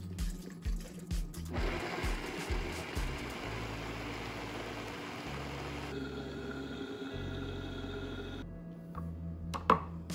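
Vitamix blender running as it blends a smoothie. It starts about a second and a half in, its sound changes around six seconds in, and it stops shortly before the end. Background music with a steady beat runs underneath, and there is a short knock near the end.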